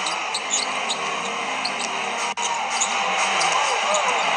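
NBA game on a TV broadcast: steady arena crowd noise with a basketball being dribbled on the hardwood and sneakers squeaking as players move. The sound drops out for an instant a little past two seconds.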